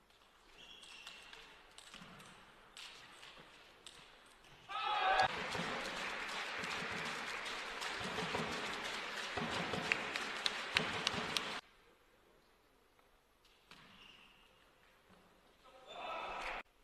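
Table tennis ball knocking back and forth between bats and table in a rally. About five seconds in, the arena crowd breaks into cheering and applause that runs for about seven seconds, then stops.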